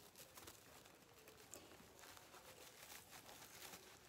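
Faint rustling of a sheer organza drawstring bag being handled and pulled open by hand, with small scattered crinkles.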